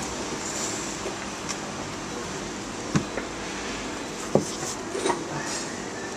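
Steady background noise of a bar room, broken by a few short knocks about three, four and five seconds in.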